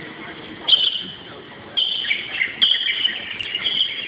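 Birds chirping in four short, high-pitched bright bursts, a second or less apart, over faint background murmur.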